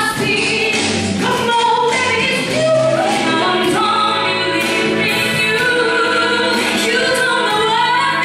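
A female voice singing into a handheld microphone over amplified instrumental accompaniment with a steady beat.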